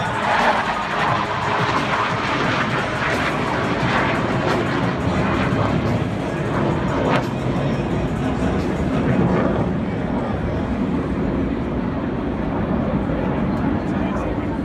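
A Blue Angels F/A-18 Hornet jet passing over with a steady noise. Its sound is highest and brightest in the first few seconds and turns lower and duller as the jet moves off, under stadium crowd noise and music.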